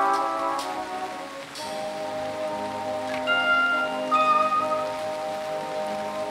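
Brass band holding sustained chords that fade and dip about a second and a half in, then start again, with bright struck bell tones coming in about three and four seconds in. Rain is heard underneath.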